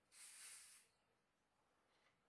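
Carbonation gas hissing out of a plastic bottle of homebrewed beer as its screw cap is loosened. One short hiss, under a second long, starting just after the cap is turned.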